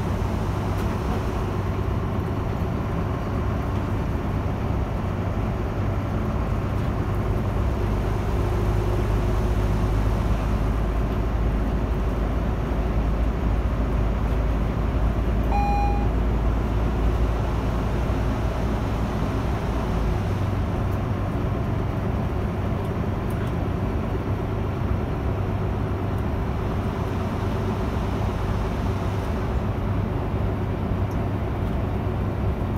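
Volvo bus under way, heard from inside: a steady engine and road noise whose low drone is heavier through the middle and eases about two-thirds of the way in. A single short electronic beep sounds about halfway.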